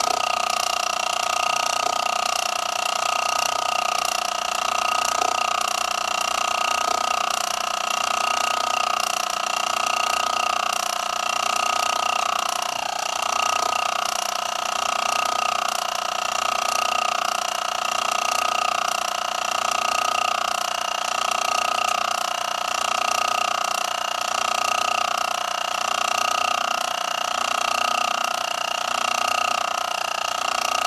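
Small laminar-flow free-piston Stirling engine generator running, its aluminium piston and magnets oscillating in a coil: a steady tone with overtones, swelling and fading slightly about every second and a half.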